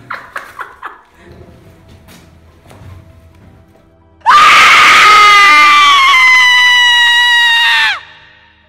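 A very loud, long scream over the hiss of TV static starts suddenly about four seconds in. Its pitch falls slightly before it cuts off abruptly: a horror-style sound effect.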